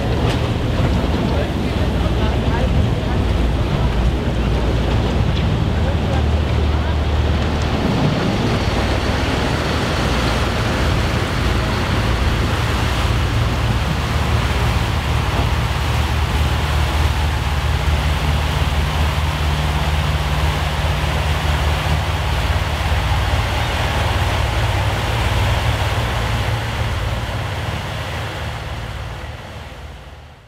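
A river hotel ship's engines run as a steady low drone while its propellers churn the lock water among pack-ice floes, with a rushing wash over it. The drone shifts pitch a couple of times, and the whole sound fades out near the end.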